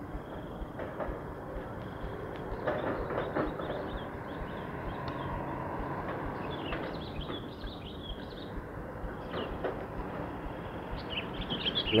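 Steady outdoor background rumble, like distant road traffic, with a few faint bird chirps through the middle.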